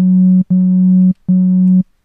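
Native Instruments Massive synth patch, built on square-saw wavetable oscillators, playing three notes of the same pitch through a Low Pass 2 filter. The filter cuts its upper harmonics, so it already sounds less square.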